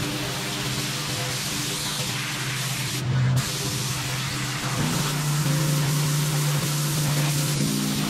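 Pressure washer wand spraying a concrete driveway: a steady loud hiss over a low machine hum. The spray cuts out for a moment about three seconds in.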